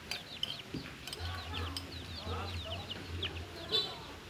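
Chickens clucking, with chicks peeping: a rapid, continuous string of short, high, falling peeps over lower clucks.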